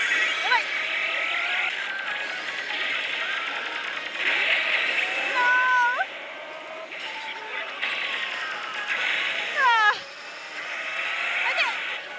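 Oshi! Bancho 3 pachislot machine's game audio during a fight scene on its screen: music and effects with shouted character voices, cut through by several quick sliding electronic tones, the sharpest about ten seconds in.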